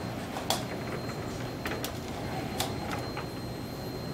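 Mobile manipulator robot running, with a steady low hum, a thin high whine and a few sharp clicks as it starts moving its arm.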